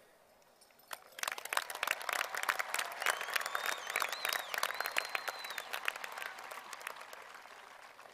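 Scattered applause from a crowd, starting about a second in and dying away near the end, with a long wavering whistle through the middle of it.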